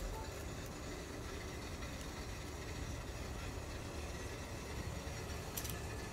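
A dishwasher running, a steady low wash noise. A few faint clicks come near the end.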